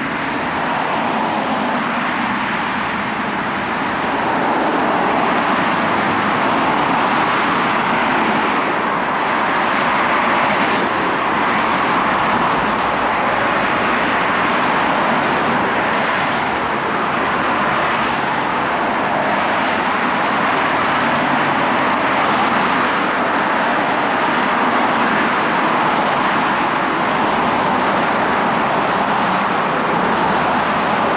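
Steady road traffic: cars driving past on a multi-lane road, their tyre and engine noise blending into a continuous rush, a little louder after the first few seconds.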